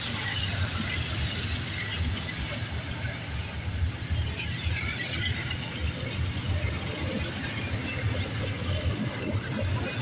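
Double-stack intermodal well cars rolling past, steel wheels on the rails making a steady low rumble.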